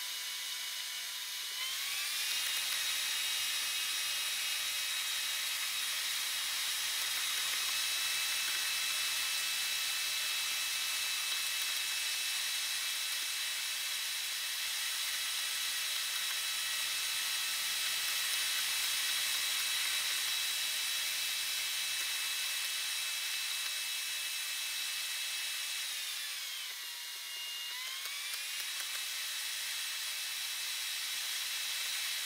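Car engine and road noise heard from inside the cabin, played back at sixteen times speed, which turns it into a high, steady, multi-toned whine over a hiss. The pitch climbs about two seconds in, then dips and climbs back near the end, as the car's speed changes.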